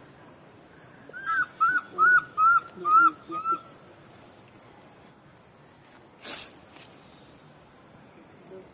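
A series of six short whistled animal calls, each rising then falling in pitch, evenly spaced over about two and a half seconds. A brief burst of noise follows a few seconds later.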